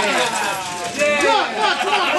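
People's voices: excited exclamations and chatter, with no other sound standing out above them.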